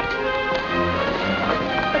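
Orchestral film-score music, several instruments holding sustained notes.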